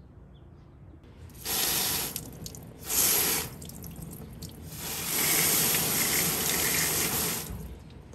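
Garden hose spray nozzle spraying water onto a plant's bare roots and the hand holding it, in three bursts. The first two are short and the last runs about two and a half seconds.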